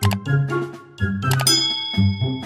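A bright bell-like ding sound effect about one and a half seconds in, ringing on for about a second, preceded by short clicks: the notification-bell sound of a subscribe-button overlay. Background music with a bass line runs under it.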